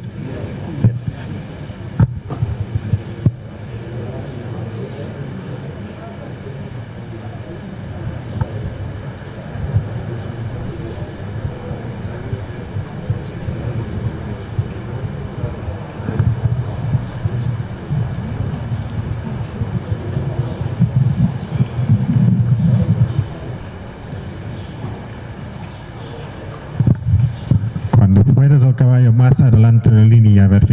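Indistinct, murmured voices over a steady low rumble, with a few sharp clicks in the first few seconds.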